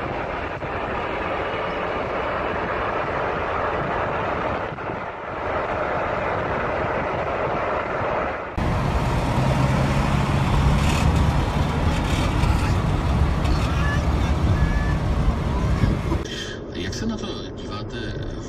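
Steady vehicle driving noise, engine and road rumble as picked up by a dashcam, with indistinct voices. It changes abruptly about 8.5 s in to a louder, deeper rumble, and again near the end.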